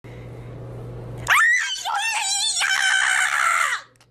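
A woman screaming in a very high-pitched, shrill voice with wavering pitch for about two and a half seconds. The scream starts about a second in over a low steady hum and stops just before the end.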